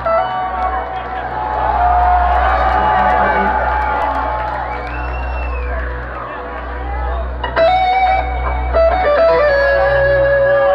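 Live electric guitar playing a slow melody of long held notes, one bending up and back down about halfway through, with audience chatter underneath.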